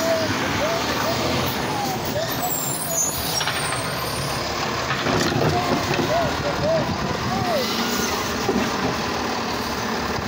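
Automated side-loader garbage truck running steadily as it pulls forward and its hydraulic arm works the carts, with short up-and-down whines through it. A person laughs near the end.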